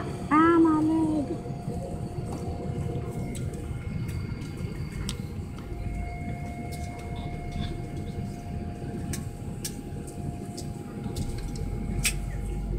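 Steady airliner cabin noise in an Airbus: a low, even rumble with a faint steady whine over it and a few soft clicks. A voice sounds briefly at the very start.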